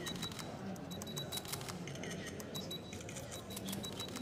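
Many camera shutters clicking in rapid, irregular succession, over soft background music.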